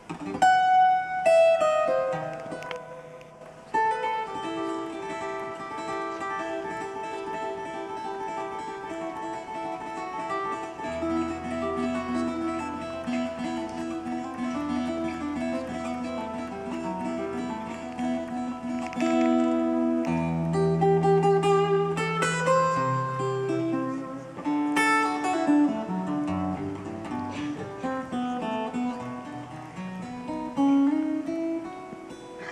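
Live folk-rock band playing an instrumental passage led by plucked acoustic guitar, with low bass notes coming in about eleven seconds in.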